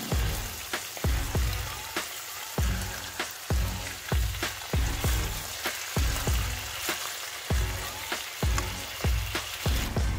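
Pork steaks sizzling in hot oil in a frying pan, a steady hiss. Background music with a beat of about two thumps a second plays underneath.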